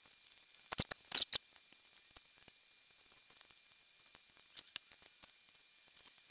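Paper pages and dividers being handled in a ring-bound planner: a few sharp clicks and a brief rustle about a second in, then only a couple of faint ticks.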